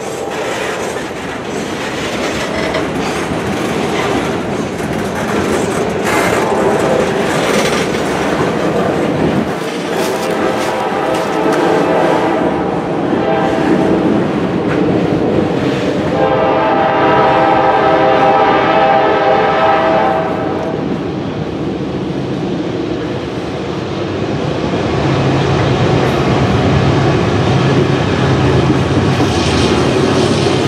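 Freight cars rolling slowly past with wheel clatter, then a diesel locomotive horn sounding for several seconds, loudest about two-thirds of the way through. Near the end the low drone of GE diesel locomotives working at full throttle (notch 8) grows as a loaded grain train approaches.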